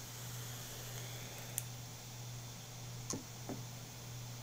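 A long draw on an electronic cigarette: a faint steady hiss for the first couple of seconds, then a few soft clicks as the vapour is let out near the end. A steady low hum runs underneath.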